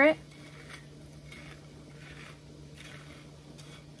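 Fingers pressing and crumbling clumped, half-dried lemon sugar on a ceramic plate: a faint, crunchy rustle of sugar crystals, the crust dry but still moist underneath.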